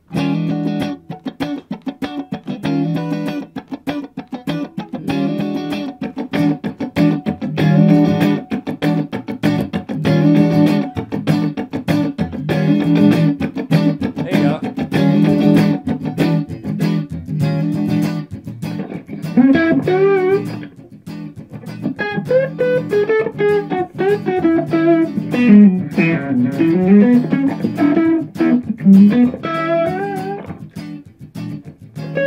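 Clean Fender Stratocaster electric guitar playing a funk rhythm part: a steady run of choppy strums on one chord, the E9 chord being taught. About two-thirds of the way in it changes to sliding single-note melodic lines.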